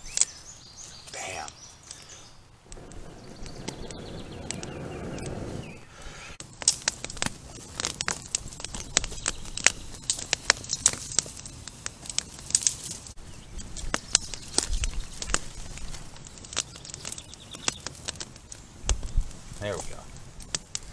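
Dry-grass tinder and twigs burning in a campfire: a soft rushing stretch as the flames take hold, then, from about six seconds in, dense irregular crackling and popping.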